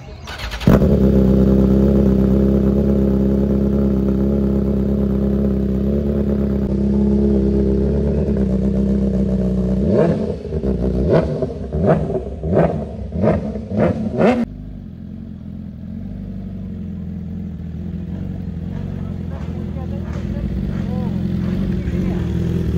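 BMW S 1000 RR inline-four sport bike with an Austin Racing aftermarket exhaust, coming in loudly about a second in and idling steadily. About ten seconds in it gives six quick, sharp throttle blips. After that it drops to a quieter, steady running that slowly grows louder.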